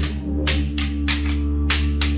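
Didgeridoo playing a low, steady drone, with a pair of wooden boomerangs clapped together in an even beat, about three sharp clacks a second.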